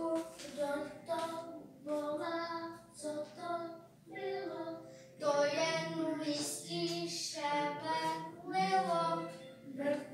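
A group of children singing a song together in short phrases with brief breaks between them.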